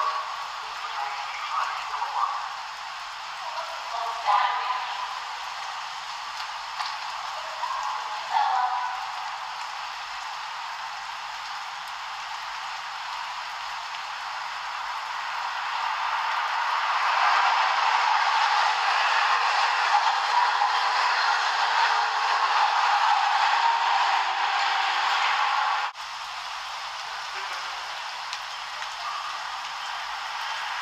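Train noise, a steady rush that swells over several seconds and cuts off suddenly about 26 seconds in, heard through a thin, low-quality microphone.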